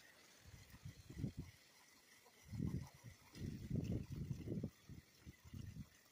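Garden hose spray nozzle spraying water onto potted plants, a faint steady hiss. Irregular low rumbles come and go over it several times.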